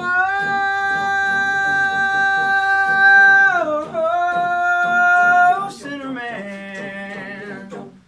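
Voices singing a cappella hold one long, loud note in imitation of a train whistle, over a quick, even chugging pulse of about four beats a second. The note dips in pitch about three and a half seconds in and is held again. Near the end it gives way to a quieter, lower note with vibrato.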